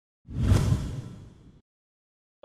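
Whoosh sound effect for a TV show's logo reveal: a deep rush that swells in quickly, peaks about half a second in and fades away by about a second and a half.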